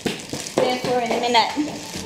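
A voice talking indistinctly, pitched like a woman's or a child's, over the rustle of paper and packaging being handled.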